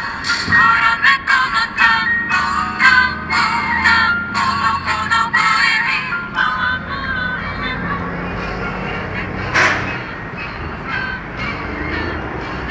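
A song with singing plays from a radio receiver tuned to a distant FM station. About halfway through, the music fades and a low steady engine rumble takes over. One sharp crack sounds about ten seconds in.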